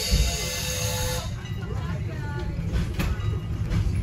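A steam locomotive's whistle sounds as a steady chord of several tones and cuts off about a second in, leaving the low rumble of the moving wooden passenger coach rolling on the rails.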